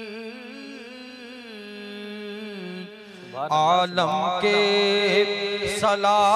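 A man singing a devotional Urdu naat into a microphone: a soft, wavering held note over a steady low drone, then about three seconds in his voice comes in much louder, sung line with heavy vibrato.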